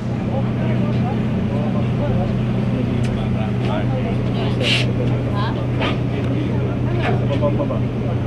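Steady low drone of a sightseeing cruise boat's engine, with indistinct voices talking over it.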